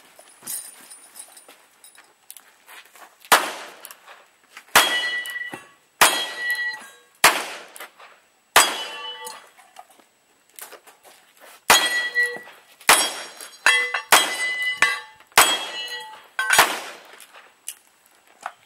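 Revolver shots at steel targets: five shots about a second and a quarter apart, a pause of about three seconds, then five more. Each shot is followed by the ringing clang of the steel plate it hits.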